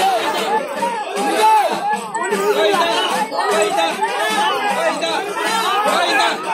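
A crowd of many voices talking over one another in a steady babble.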